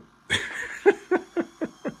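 A man laughing: a breathy burst, then a run of about five short ha's.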